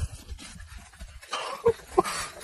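A person breathing hard at close range over a low rumble, the breaths growing heavier about a second and a half in, with two short, sharp grunts near the end, from the strain of squeezing through a tight gap.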